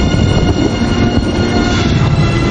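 Background music with sustained held chords over a dense low end.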